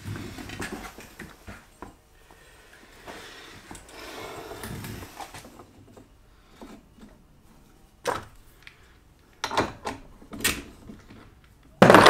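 Sparse metallic clicks and knocks from steel parts and a hub-press tool being handled on a trailing arm, with a few sharp separate clinks in the second half.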